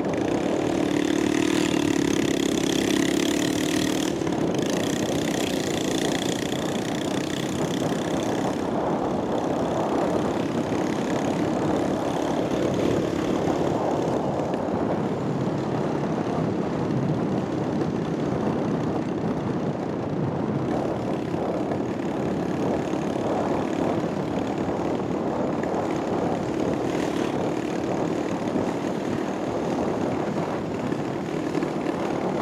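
Steady drone of a car's engine and tyres while driving along a street, with a humming tone over the first few seconds.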